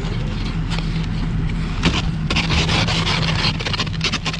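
Frost being scraped off a car windshield with the end of a can, in repeated scratchy strokes that are thickest in the second half. A car engine hums steadily underneath.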